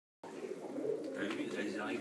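Faint cooing of pigeons in a church belfry, beginning suddenly a fraction of a second in.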